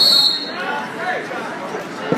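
A referee's whistle blown once, short and shrill for about half a second as the bout is stopped, over the steady chatter of a gym crowd.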